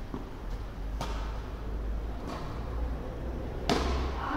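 Tennis ball struck by rackets in a doubles rally: four sharp pops about a second apart, the loudest near the end, over a steady low rumble.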